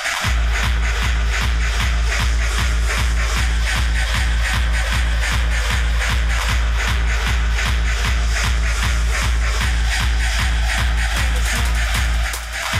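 Hardcore gabber track from a DJ mix: a heavy kick drum comes in right at the start after a breakdown and keeps a fast, even beat of about three hits a second.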